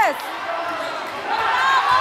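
Sneakers squeaking on a hardwood gym floor in short rising-and-falling chirps, over crowd voices, with a basketball bouncing near the end.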